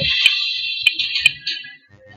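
A loud, shrill, high-pitched alarm-like ringing lasting about a second and a half, cut through by a few sharp clicks, then stopping.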